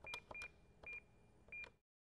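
Electronic beep sound effect: four short beeps at one high pitch, each starting with a click, in an uneven quick sequence that stops shortly before the end.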